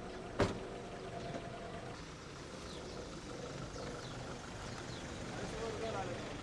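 Outdoor street ambience: a steady low hum of distant traffic with faint voices, and one sharp click about half a second in.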